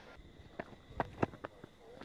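Quiet cricket-ground ambience with a few faint, short thuds and clicks as a ball is bowled: the bowler's footfalls and the ball landing, picked up by the stump microphone.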